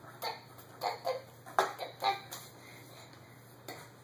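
Cat paw and a hand batting at a cardboard box, a string of quick taps and scuffs on the cardboard that thins out, with one more tap near the end.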